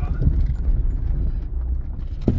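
Cabin sound of a 1990 Lada Samara (VAZ-2108) rolling slowly over a broken, rocky dirt track: a steady low rumble with irregular knocks and clatter from the tyres and suspension on loose rocks.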